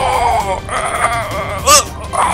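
A cartoon character's strained, wavering cry while being squeezed, ending in a short sharp yelp, the loudest moment, near the end, over background music.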